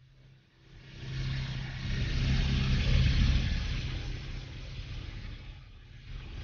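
A low rumbling noise with a hiss on top that swells up over about two seconds, holds, then slowly fades away.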